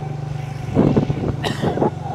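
A motor vehicle's engine running steadily as it drives along, a low even hum.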